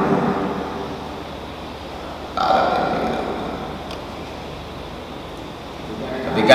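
A man's voice trailing off, then one drawn-out vocal sound about two and a half seconds in that starts suddenly and dies away over a second or so, echoing in a large hall.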